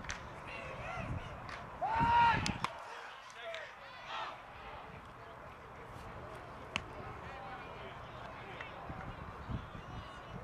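Scattered voices of players and spectators at a baseball game, with one loud, drawn-out shout about two seconds in and a single sharp click near seven seconds.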